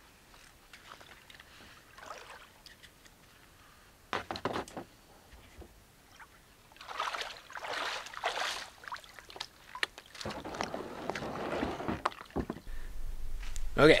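Water sloshing and splashing as a person wades in the shallows beside a kayak, with a few sharp knocks on the kayak about four seconds in.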